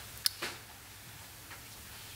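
Two short clicks close together, the first sharper, then quiet room tone.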